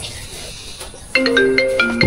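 A mobile phone ringtone starts about a second in: a quick melody of short, clear marimba-like notes.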